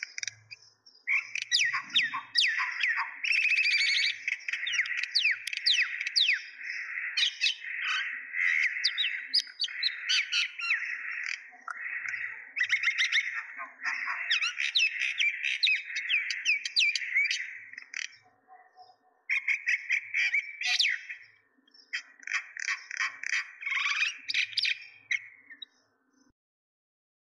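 Birds chirping and twittering in a dense, continuous chatter of quick overlapping chirps, with a couple of short pauses before stopping suddenly at the end.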